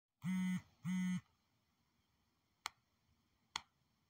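Two short, flat electronic buzz tones, each about half a second long and cut off abruptly, followed by two sharp clicks about a second apart.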